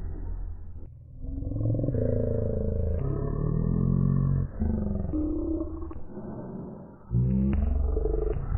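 Cartoon character dialogue distorted into deep, muffled growling voices, in several phrases broken by short gaps.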